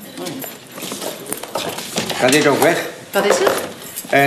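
Small hard objects clinking and rattling as they are rummaged through and sorted by hand, in a series of light clicks. A voice is heard briefly in the second half.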